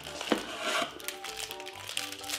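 Plastic candy wrappers crinkling as they are handled and unwrapped by hand, with light background music coming in about a second in.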